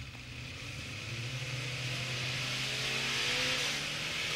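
A car engine sound effect opening a hip-hop track, running with a steady low hum while its pitch rises slowly and it grows gradually louder, like an engine revving up.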